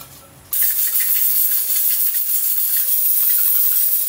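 Pressure cooker on a gas burner venting steam through its valve: a loud, steady hiss that starts suddenly about half a second in. A steady hiss like this is the sign the cooker is up to pressure with the pig's trotters inside.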